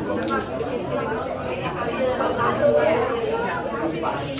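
Indistinct chatter of many people talking at once in a crowded small eatery, with no single voice standing out.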